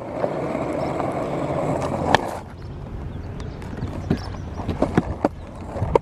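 Penny board wheels rolling over asphalt, a steady rumble that ends with a sharp clack about two seconds in; after that it is quieter, with a few scattered clicks.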